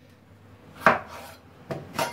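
Chef's knife cutting through a raw potato and striking a wooden cutting board: two sharp knocks, the first a little under a second in and louder, the second near the end.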